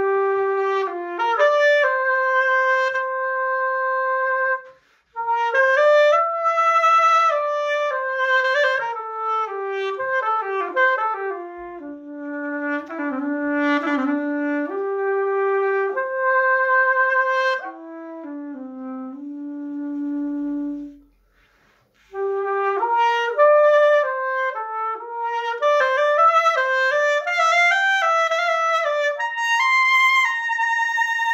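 Birbynė, a Lithuanian folk reed pipe with a horn bell, playing a solo melody with a bright, trumpet-like tone. It stops briefly twice, about five seconds in and again around twenty-one seconds.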